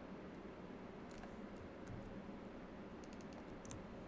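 Faint keystrokes on a computer keyboard, typing in short scattered clusters over a steady hiss.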